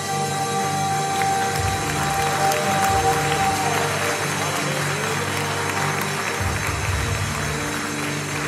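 Live worship band playing with keyboard, acoustic guitar and a drum kit with cymbals. A long held note ends about three and a half seconds in.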